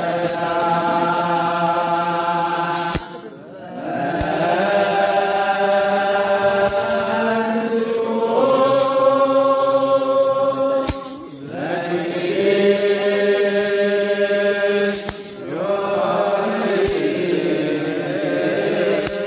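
Ethiopian Orthodox wereb: a group of men chanting in unison in slow, drawn-out phrases on held notes, pausing briefly about three times. Hand-shaken metal sistra jingle faintly over the voices, and a few soft low knocks sound beneath.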